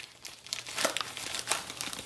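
Small mailer envelope crinkling and rustling as it is pulled open by hand: a run of irregular little crackles that starts a moment in.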